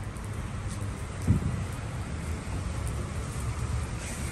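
Steady rain on wet pavement over a low, even rumble of wind and traffic, with a short low sound about a second in.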